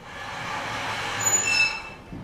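A sliding blackboard panel being pulled down on its runners: a scraping rumble that builds for about a second and a half, with thin high squeals near the end before it stops.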